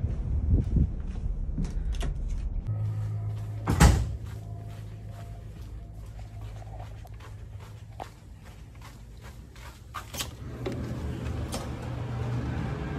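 A heavy door shuts with a loud bang about four seconds in. Before it, wind rumbles on the microphone on the ship's open deck. After it comes a steady low hum of the ship's interior, with a few light knocks and footfalls.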